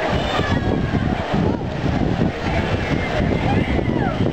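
Waterpark ambience: wind buffeting the camera's microphone in a steady rumble, with distant voices of people around the pool.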